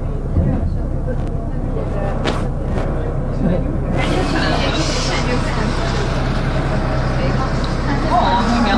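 City bus engine running steadily, heard from inside the passenger cabin. About halfway in, a louder rushing noise joins.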